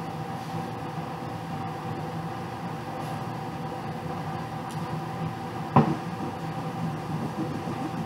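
Room air conditioner running with a steady hum. A single short knock about six seconds in.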